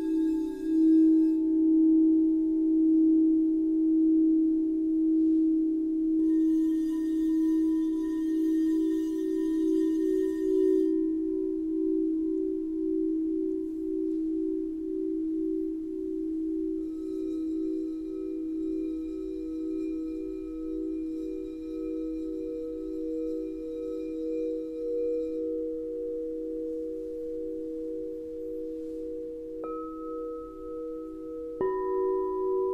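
Crystal singing bowls played with a wand, several bowls ringing together in long held tones with an even, pulsing waver. A higher bowl joins a little past halfway through.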